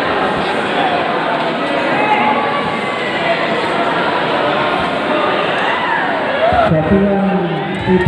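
Crowd of spectators shouting and cheering, many voices overlapping in a large hall. A man's voice stands out above the crowd near the end.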